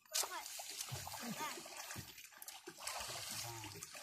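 Water splashing in the shallows, with men's voices talking over it.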